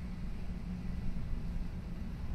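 Steady low rumble of night-time city background noise, with a faint steady high-pitched whine over it.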